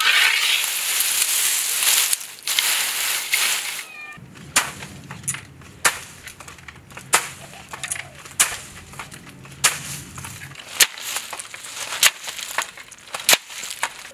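Dried soybean plants rustling for the first few seconds, then a wooden pole striking the heap of dry bean plants on concrete about eight times, roughly once every 1.2 seconds: threshing the beans out of their pods. A low steady hum runs under the middle of the strikes.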